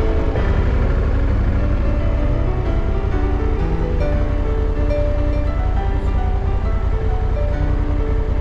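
Background music with steady notes over the loud, low rumble of a motorcycle on the move, its engine and wind noise mixed together.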